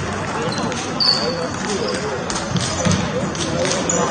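Table tennis ball being struck back and forth in a rally: irregular sharp clicks of the ball off paddles and table, with a brief high squeak about a second in.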